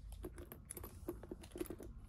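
A quick run of light, faint clicks and taps as a hand handles a small handbag and lets go of it.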